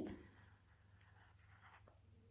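Faint scratching of a pencil writing on a workbook page.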